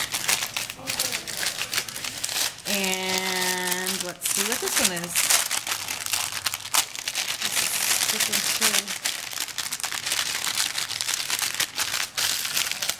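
Plastic goodie bag and wax paper crinkling and rustling with many small crackles as a small notebook is handled and slid into the bag. A short hummed note is heard about three seconds in.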